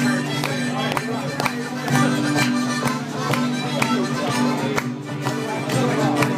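A small folk band playing an Irish jig live, with strummed acoustic guitar keeping a steady rhythm under sustained chords and a lilting melody.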